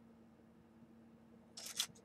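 Quiet room tone with a faint steady hum, then near the end two or three short clicks and rustles as hands take hold of a plastic action figure.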